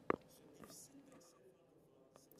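A pause in speech: a short mouth click and breath just at the start, then faint room tone.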